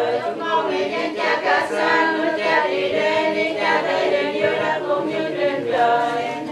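A group of voices chanting prayers together in unison, unaccompanied, in the sung recitation style of Vietnamese Catholic prayer.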